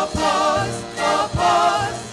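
A chorus of voices singing a show-tune number, holding long notes with vibrato over band accompaniment, with two heavy low accents on the beat.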